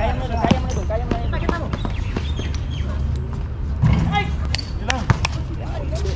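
Basketball bouncing on an outdoor concrete court, a few sharp separate bounces during a fast break, with players shouting over it.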